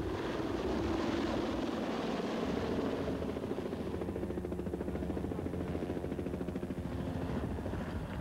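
Medevac helicopter lifting off and climbing overhead, its rotor beating steadily and fast.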